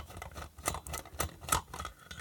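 A screwdriver prising a plastic lamp end cap off its finned aluminium heatsink, giving a handful of light, irregular clicks as the cap works loose.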